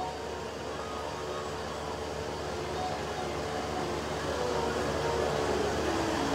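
Steady background noise of a large hall's sound system, with a few faint held musical notes lingering after a bhajan.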